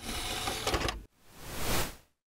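Channel intro sound effect: a mechanical, rattling burst of about a second, then a whoosh that swells up and cuts off.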